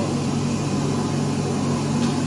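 Steady low mechanical hum with an even hiss of background noise.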